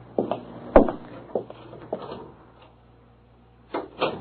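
Radio-drama sound effects of a door and footsteps: a handful of separate wooden knocks and thumps, the heaviest a little under a second in, with another near the end.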